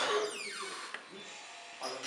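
A door opening: a sharp click at the start, then the hinge creaking in one falling squeak that lasts about a second.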